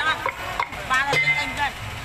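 A stage performer's voice in two short, high-pitched phrases, the second starting about a second in, over a low hiss.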